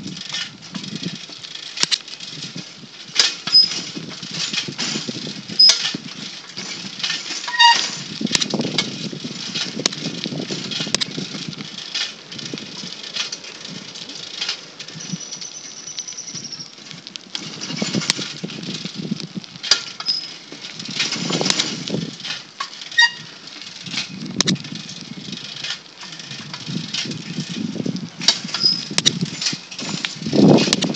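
Handling noise from a phone carried while walking: irregular rubbing and knocking on the microphone with scattered sharp clicks, and a brief thin high tone about halfway through.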